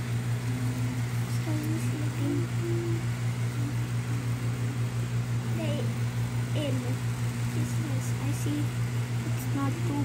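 A steady low mechanical hum with a gently pulsing loudness, with soft, quiet voices murmuring over it.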